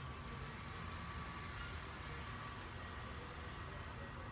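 Steady indoor room tone: a low hum with a light hiss and a faint steady tone, with no distinct events.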